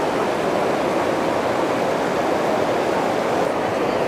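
Fast-flowing river water rushing over and along a concrete step: a steady, even rush of water noise.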